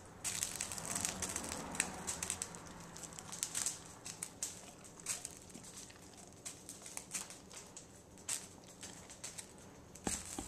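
Spatula scooping thick mayonnaise out of a jar and dropping it into a mixing bowl: soft wet scraping with many small irregular clicks, busier in the first few seconds.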